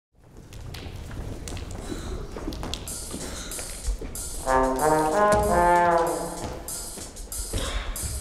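Soundtrack music: a low rumble with scattered clicks, then a loud held brass chord about halfway through that lasts about two seconds before fading.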